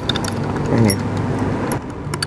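Loose metal nails clinking against one another as they are handled and stacked, in a series of light scattered clicks, with low voices.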